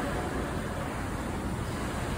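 Steady poolside background noise: an even hiss with a low rumble and no distinct events.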